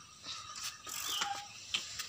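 A few light mechanical clicks and ticks, spaced irregularly through a quiet stretch.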